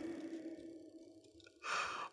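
A man's laughter dying away, a short lull, then a quick breathy sigh near the end.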